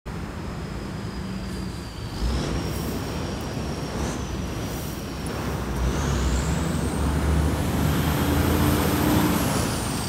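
Outdoor background rumble, like a motor vehicle running nearby, steady and low, growing a little louder about halfway through. Over it runs a thin high whine that climbs steadily and then falls back near the end.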